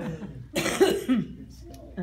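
A person coughing, one short burst about half a second in that lasts under a second.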